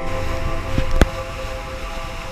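Sportfishing boat running at speed: steady wind and rushing-water noise, with a single sharp click about a second in.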